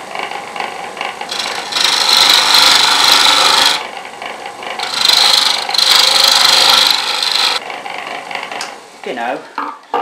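Chisel cutting a spinning softwood disc on a wood lathe, two long scraping passes of a few seconds each over the steady hum of the lathe motor. Near the end the cutting stops and the motor runs on alone.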